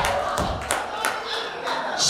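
Congregation clapping in a steady rhythm, about three claps a second, with voices shouting over it.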